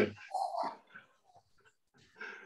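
Laughter on a call trailing off: the end of one loud laugh, then a short, softer laugh about half a second in that dies away within the first second.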